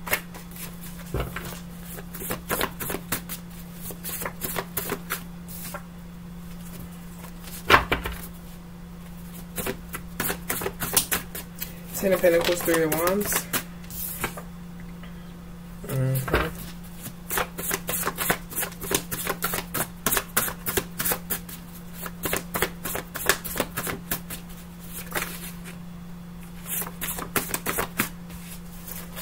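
Tarot deck being shuffled by hand: runs of rapid card clicks broken by short pauses, over a steady low hum. About twelve seconds in, a brief wordless hum of a voice.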